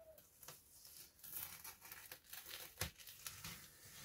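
Masking tape and masking paper being peeled off a painted board: faint crinkling and tearing with scattered small crackles, and one sharper click about three seconds in.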